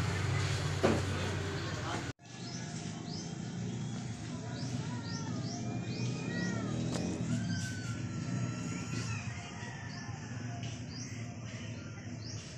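Small birds chirping in the background: many short rising chirps and a few longer whistled calls. They start after an abrupt cut about two seconds in, over a low steady hum.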